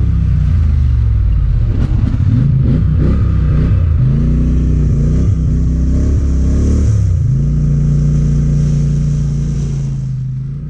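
ATV engine running under way on a muddy trail, its pitch rising and falling with the throttle through the middle few seconds, then settling to a steady drone near the end.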